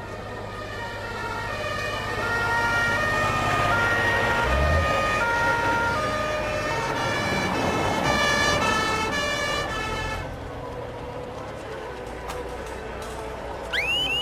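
Emergency vehicle sirens, several two-tone horns sounding over one another, swelling and then fading out about ten seconds in.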